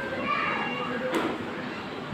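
Children's voices talking, with one short click a little past a second in.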